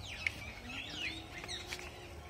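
Birds chirping in the trees, a string of quick rising and falling calls over a faint low rumble.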